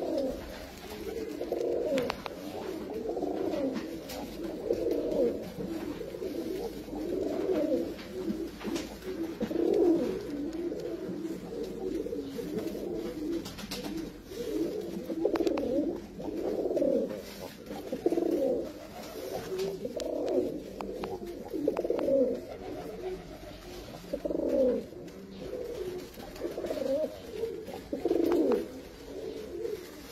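Domestic white pigeons cooing over and over, the low coos following and overlapping one another almost without a break.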